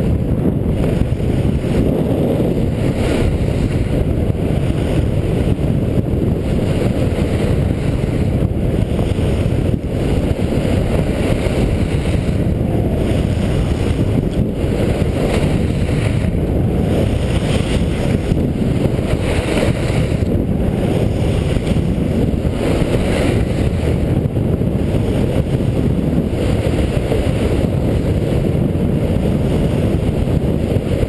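Wind buffeting the microphone of a camera worn by a skier at speed, a loud steady low rumble, with the hiss and scrape of skis on groomed snow coming and going through the turns.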